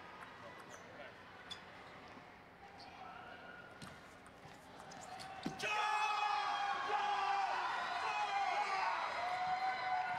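A table tennis rally: the celluloid ball clicks off bats and table. About five and a half seconds in the point ends, and a player yells long and loud in celebration.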